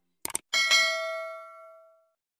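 Subscribe-button animation sound effect: a quick double mouse click, then a bright bell ding about half a second in that rings on and fades away over about a second and a half.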